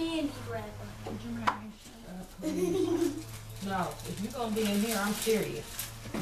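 Indistinct voices talking over a steady low hum, with one sharp click about a second and a half in.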